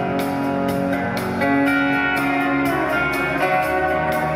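Live folk-rock band playing an instrumental passage without vocals: acoustic guitar strumming under sustained held notes, with short regular strokes about twice a second.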